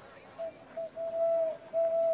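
Golden mechanical owl in a clock tower hooting like a cuckoo clock: clear single-pitch hoots, two short and then two longer, the longer ones dipping slightly at their ends.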